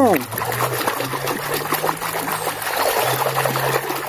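Water splashing and sloshing in a plastic basin as a hand scrubs a toy truck under soapy water: a quick, irregular run of small splashes.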